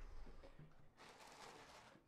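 Near silence: faint room tone with a soft, even hiss that grows slightly in the second half.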